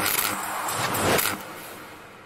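Noisy whooshing sound effects of an animated subscribe intro, swelling about a second in and then fading away.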